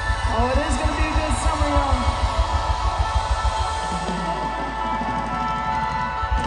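Live band playing at full volume: electric guitars, bass and drums with a steady beat under held notes.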